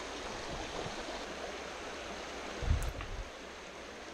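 Small rocky creek flowing steadily, a continuous rush of water. There is one dull low thump about two and a half seconds in.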